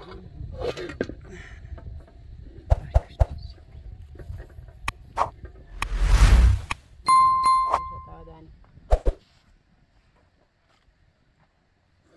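Subscribe-button animation sound effects: a few sharp clicks, a whoosh about six seconds in, then a bell-like ding that rings for about a second, and a final click.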